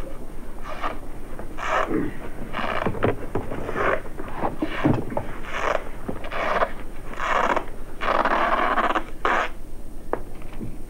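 Adhesive tape being pulled off the roll and pressed along a carpeted floor, in a string of irregular rasping pulls, the longest about eight seconds in.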